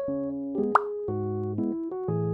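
Bouncy keyboard background music, with a short rising plop sound effect about three-quarters of a second in.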